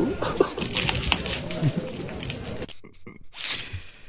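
A man gasps with his mouth at a Sprite bottle as it foams over, against the chatter of a crowded hall. The sound cuts off abruptly about two and a half seconds in.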